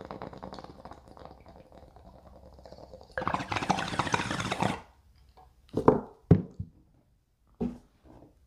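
Water bubbling in a glass bong as smoke is drawn through it while the bowl is lit. The bubbling turns louder and harsher about three seconds in for a second and a half. Near the end come a few short knocks as the glass bong and a plastic lighter are set down on a wooden table.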